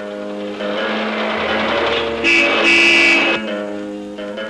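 A car horn sounds two blasts a little past halfway through, the loudest sound here, over background film music with sustained notes.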